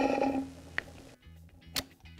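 A man's short laugh trailing off in the first half second, then faint background guitar music with a light click near the end.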